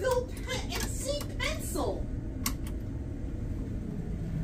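Cabin bathroom door being pushed open, with a few light clicks from the door and its handle over a low steady hum.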